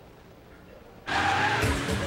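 Car tyres squealing as a car swerves fast, starting suddenly and loudly about a second in after a quiet moment. Music comes in under it.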